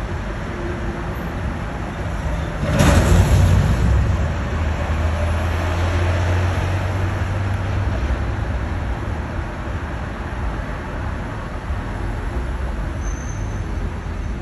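Street traffic heard from above: steady road noise from passing cars. About three seconds in comes a sudden loud burst of noise, followed by a low engine rumble that fades away over the next few seconds as a vehicle passes.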